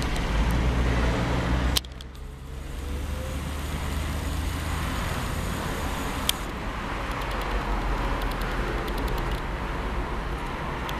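City bus engine running close by for about two seconds, cutting off abruptly, then steady street traffic: the bus and cars driving along the road, with a single sharp click about six seconds in.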